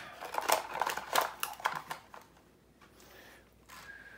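Hard plastic RC car body shell being handled and fitted down onto its chassis: a quick run of clicks and plastic rattles for about two seconds, then only faint handling.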